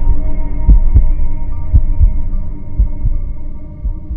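Soundtrack of deep heartbeat-like thumps over a sustained low drone. The thumps come roughly once a second, sometimes in pairs, and grow quieter toward the end.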